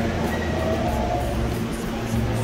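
Steady low rumble of a subway train running through the station, with a faint thin whine over it.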